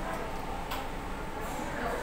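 Metal spoon and chopsticks clicking lightly against bowls while eating, a few separate clicks over a steady background murmur.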